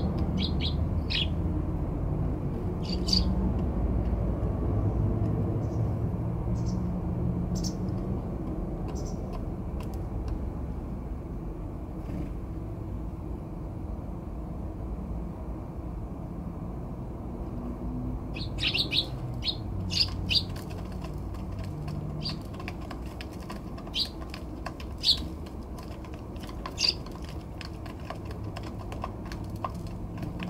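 Eurasian tree sparrows chirping: short, high chirps that come in small groups, sparse through the middle and thicker from a little past halfway, over a steady low background rumble.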